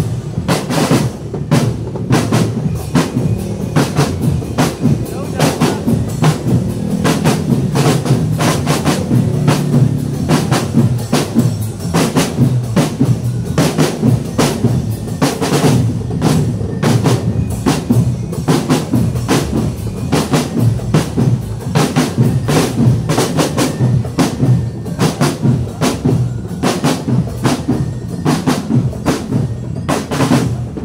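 Marching drum band playing: a mass of strapped marching drums beaten with sticks in a continuous, driving march rhythm, with bass drum beneath.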